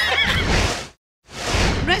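Studio audience laughter and applause fading out to a brief dead silence at an edit, then a rush of crowd noise swelling back in.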